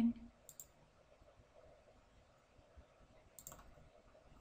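Two faint computer mouse clicks, one about half a second in and one about three and a half seconds in, each a quick click. They set the two corners of a rectangle being drawn in CAD software.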